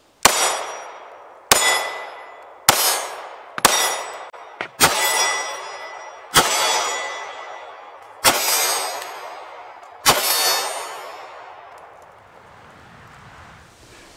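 About eight shots from a Kahr ST9 9mm pistol, fired one at a time at a steady pace about 1 to 2 s apart. Each sharp report rings out in a long echo that fades before the next shot.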